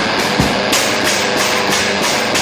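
Lo-fi garage punk song: a dense, steady wash of distorted electric guitar.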